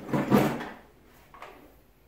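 A brief sliding scrape lasting about half a second, followed by a small knock about one and a half seconds in, then faint room noise.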